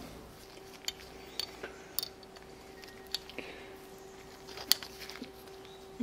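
A few light clicks and taps of metal hand tools being handled and fitted onto a rusty threaded link rod, the sharpest about two seconds in and another near the end, over a faint steady hum.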